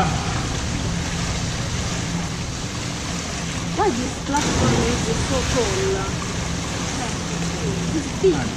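Steady echoing hiss of an indoor swimming-pool hall, water running and lapping in the pool, with faint distant voices. A sudden noisy burst comes about four seconds in.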